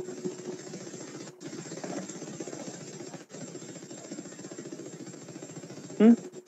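Steady low background noise with a fine rapid flutter, like a motor or fan hum, and a faint thin high-pitched whine. The noise drops out briefly twice.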